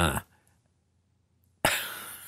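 A man coughs once, short and sudden, near the end, after about a second of near silence.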